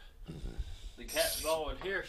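A man's voice, a few indistinct words starting about a second in.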